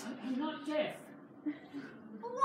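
Speech: a person speaking a short phrase, then a brief pause.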